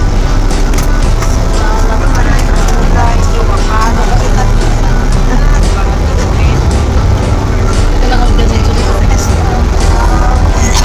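Steady low rumble of a Golden Dragon coach's engine and running gear inside the passenger cabin, with voices and music over it.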